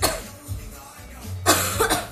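A person coughing twice, one short cough at the start and a longer one about a second and a half in, over background music with a steady bass line.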